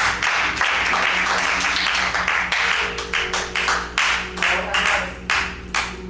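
Congregation clapping in response to the preacher: a dense patter at first that thins after about three seconds into scattered single claps, over a steady held musical chord.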